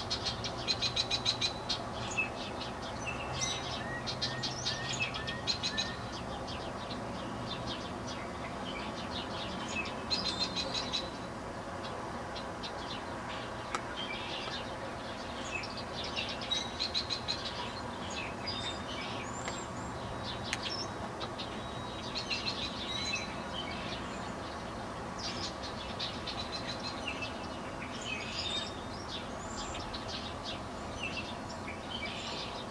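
Several small birds chirping and calling in short clusters, over a steady low hum.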